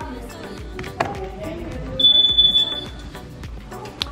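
A single high-pitched electronic beep lasting about a second, starting about halfway through, from a door alarm on the sliding doors to the pool.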